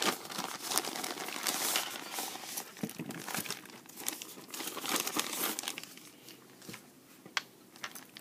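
Plastic mailer bag and plastic-sleeved sticker packs crinkling and rustling as the package is opened and its contents are handled. The sound is busy and crackly for the first five seconds or so, then thins to a few sharp clicks of plastic near the end.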